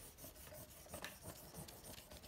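A white block eraser rubbing back and forth over paper in quick, faint scrubbing strokes, erasing pencil lines from under an inked drawing.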